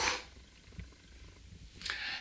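A man's breathing after exertion: a breathy exhale at the start, then quiet, then a quick intake of breath near the end.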